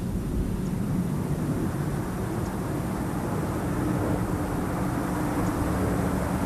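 Space Shuttle orbiter Endeavour rolling out on its main landing gear with its drag chute deployed: a steady rumbling noise with a faint low hum.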